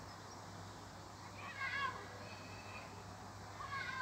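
Two faint, high-pitched wavering calls: one about one and a half seconds in, a shorter one near the end, over a low steady hum.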